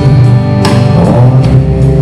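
A live band playing a song, with guitar over drums.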